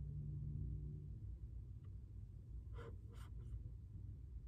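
Faint draw on a vape cartridge pen over a low, steady rumble, with a faint hum in the first second and two short, faint breathy sounds about three seconds in.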